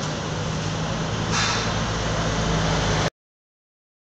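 Street traffic noise with a vehicle engine running steadily close by, and a brief hiss about a second and a half in. The sound cuts off abruptly about three seconds in.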